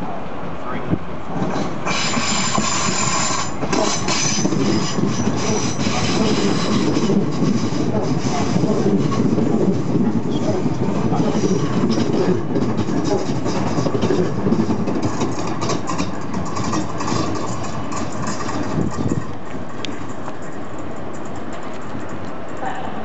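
Southeastern electric multiple-unit train running past close by along the platform. Its wheel and motor noise swells about two seconds in, with a burst of high-pitched noise, then rail clatter through the middle, dying down near the end.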